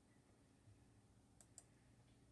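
Near silence: room tone, with two faint computer mouse clicks about a quarter second apart near the end as the slideshow is advanced.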